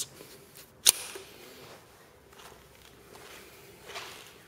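A single sharp click about a second in, from the release lever of a hot-swap drive caddy on a rackmount server case, followed by faint handling noise.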